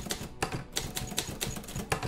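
Typewriter keys clicking rapidly, many strokes a second, as a sound effect under the narration.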